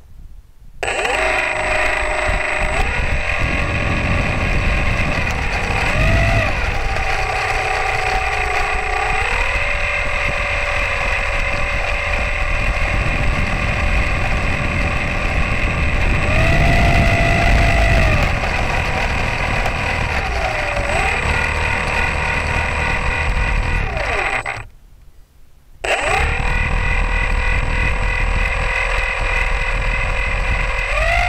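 The 400-size electric motor and propeller of a GWS Tiger Moth 400 RC plane whining on the ground, starting about a second in, its pitch rising and falling several times with the throttle. It cuts out for about a second late on, then runs again and climbs in pitch at the end, over a low rumble.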